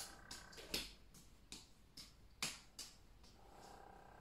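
Oranges landing in the hands as three oranges are juggled: a string of quiet, irregular pats, about two or three a second.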